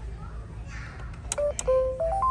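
LeapFrog Pick Up & Count Vacuum toy being set off: two clicks as its button is pressed, then short electronic beep tones from its speaker, starting about a second and a half in.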